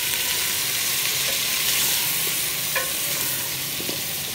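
Pre-boiled beef chunks sizzling in hot oil in an aluminium pot, a steady frying hiss. A wooden spatula stirs them, with a few light scrapes against the pot near the end.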